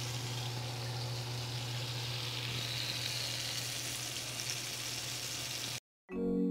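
Oil sizzling steadily in a skillet as batter-coated portobello mushroom slices fry, over a steady low hum. It cuts off abruptly near the end.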